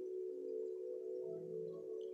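Soft background meditation music of several held, ringing chime-like tones, with a lower tone swelling in about a second in.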